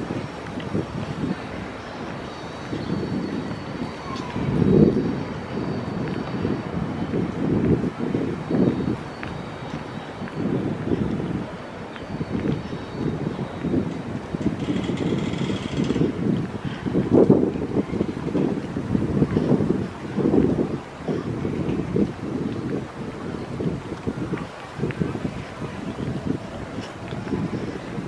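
Wind buffeting the hand-held camera's microphone in uneven gusts, a low rumbling that rises and falls throughout, with a brief hiss about halfway through.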